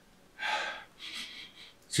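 A man breathing in sharply through the nose twice, sniffing the freshly opened mustard; the first breath is louder than the second.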